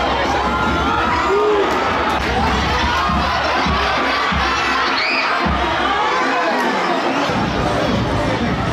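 Football stadium crowd cheering and shouting: many voices at once, loud and steady.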